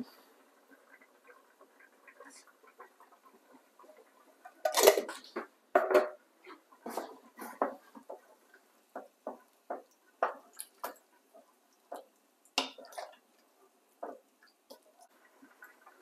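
Wooden spoon stirring a thick vegetable stew in a dark nonstick pot, knocking and scraping against the pot in short, irregular strokes about twice a second. The stirring starts about five seconds in, after a quiet stretch, and dies away shortly before the end.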